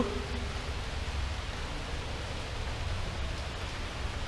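Steady background noise, a low rumble under an even hiss, with no distinct events.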